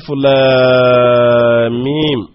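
A man's voice intoning one long drawn-out syllable at a steady pitch, sliding down in pitch near the end.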